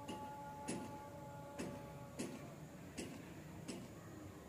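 A string of sharp ticks, about one every two-thirds of a second and not quite evenly spaced, over a faint background hum. A thin steady whine fades out halfway through.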